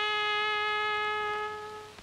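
Solo brass instrument holding one long, steady note that fades out near the end, part of the film's music score.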